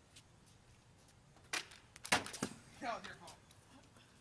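Mostly faint, with a light tap about one and a half seconds in, a few sharp knocks around two seconds, and a brief faint voice near three seconds.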